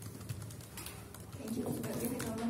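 Quiet talk at a table with faint scattered clicks, then a voice starting to speak about a second and a half in.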